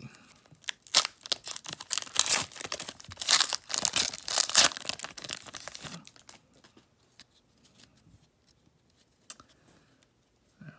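A Panini Contenders Draft Picks card pack's shiny wrapper being torn open at its crimped end, then crinkled as the stack of cards is pulled out, for about six seconds. After that the sound falls away to a few faint clicks of cards being handled.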